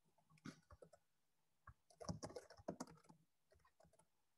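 Faint keystrokes on a computer keyboard: a few scattered clicks, then a quick run of typing about two seconds in.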